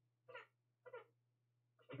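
Near silence with a low steady hum and two faint, brief voice-like sounds about half a second apart.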